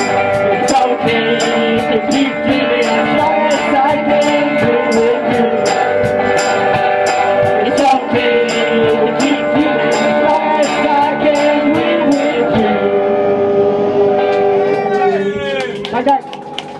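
Live blues band playing an instrumental passage, with guitar and a steady beat on the cymbals or percussion. About twelve seconds in the beat stops and the band lets a final chord ring, with one note sliding down near the end.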